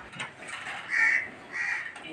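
A bird calling twice, two short calls about a second in and again about half a second later, over a faint background.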